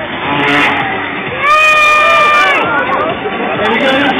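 Motocross bike engine revving up, holding a high, steady pitch for about a second, then dropping off, over an announcer's voice on the PA and crowd noise.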